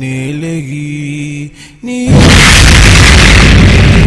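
Film score of held, chant-like tones. About two seconds in, a loud rushing boom sound effect cuts in suddenly and stays loud.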